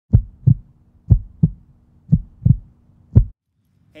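Heartbeat sound effect: deep, loud thumps in lub-dub pairs, three double beats about a second apart and then a last single beat, over a faint steady hum that stops with the last beat.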